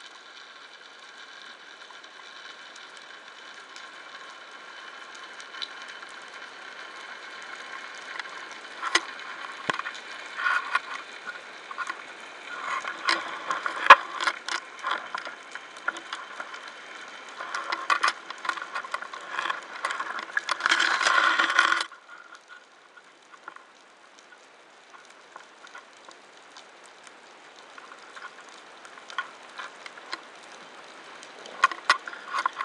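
Underwater sound through a camera in a waterproof housing: a steady hiss with irregular clicks and crackles that grow busier in the middle, ending in a dense rasping stretch that cuts off suddenly about two-thirds of the way through.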